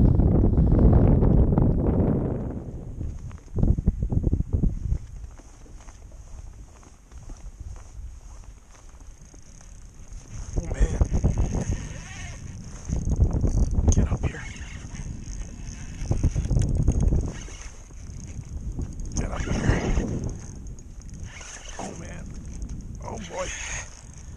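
Gusty wind buffeting the camera microphone in repeated low rumbling blasts, strongest in the first two seconds, with a faint steady high-pitched whine underneath. A short muttered word comes at the very end.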